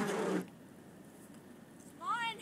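The end of a spoken exclamation in the first half-second. After it comes faint, even outdoor background with no distinct sound, and a voice starts again right at the end.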